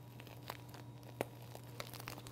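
Faint crinkling and a couple of small clicks from a plastic piping bag being handled and squeezed as lime curd is piped.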